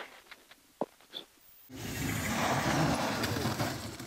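Volkswagen Polo rally car's engine and spinning tyres, a loud rough noise that starts suddenly about halfway through and lasts about two seconds as the car tries to drive out of a soft verge. It is preceded by near silence with a couple of faint clicks.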